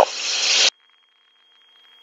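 Hiss from the aircraft's intercom audio feed after the end of a spoken word, cutting off suddenly about two-thirds of a second in as the intercom squelch closes. What remains is near silence with a faint, steady high tone.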